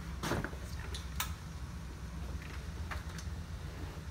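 A few sharp clicks and knocks from a Baby Jogger City Select Lux stroller's frame and seat parts as it is handled. The clearest come about a quarter second and a second in, with fainter ones later, over a low steady hum.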